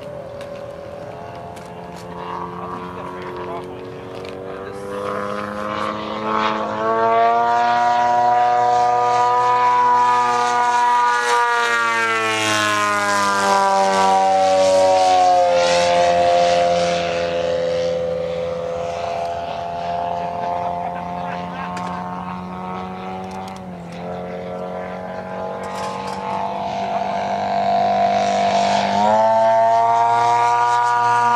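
DA150 twin-cylinder two-stroke petrol engine of a large CARF Gee Bee R2 model plane in flight, with its propeller. It throttles up about six seconds in and is loudest in the middle, where the pitch glides down as the plane passes. It steps lower twice, then opens up again near the end.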